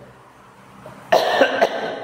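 A man coughing, a short sharp cough about a second in after a brief quiet moment.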